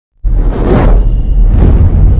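Cinematic title-intro sound effects: two whooshes, the first about half a second in and the second about a second and a half in, over a loud, deep, sustained rumble that starts suddenly.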